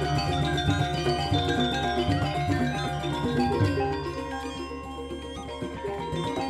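Balinese gamelan playing: bronze metallophones ringing in interlocking patterns over kendang drum strokes, with a small kettle gong keeping the beat. The music thins and drops in level about four seconds in, then picks up again near the end.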